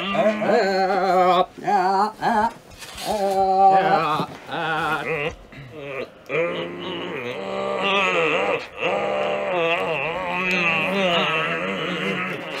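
A man making dirt bike engine noises with his mouth, 'braap' style: short revving bursts at first, then from about six seconds in one long unbroken warbling rev that rises and falls in pitch.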